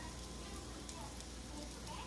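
Faint steady sizzle of food frying on a stovetop griddle.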